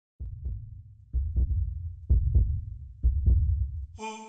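Heartbeat-like low double thumps, a lub-dub pair about once a second, four pairs in all, in a soundtrack between two pieces of music.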